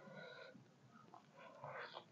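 Faint sounds of a bare hand squeezing and scooping rice, fried egg and fried silkworm pupae, with a burst of crackly squishing near the end as a handful is gathered. A short, high whine-like tone sounds at the very start.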